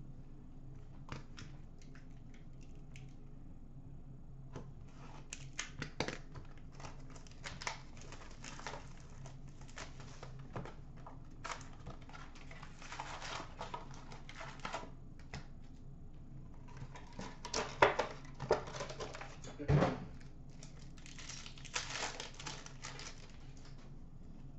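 Hockey card pack wrappers tearing and crinkling as they are ripped open, and cards being handled and shuffled, with many light clicks and taps. A single louder thump comes about four-fifths of the way through.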